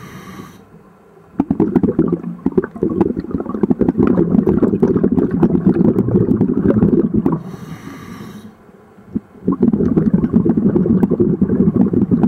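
A scuba diver breathing underwater: long stretches of loud, crackling, rumbling exhaled bubbles, broken twice by a short hiss of inhalation through the regulator, once at the very start and again about eight seconds in.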